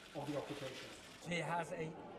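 Faint speech: brief, quiet voices in a large room, with no other distinct sound.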